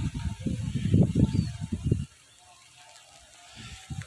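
Low, irregular rumbling and thumping on the microphone for about two seconds, then quiet.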